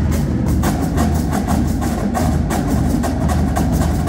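Marching drumline of snare drums, tenor drums and bass drums playing a fast cadence together, with rapid sharp snare strokes over a low drum pulse.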